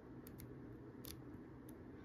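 Faint, scattered ticks and light crackles of paper stationery folders being handled and leafed through by hand.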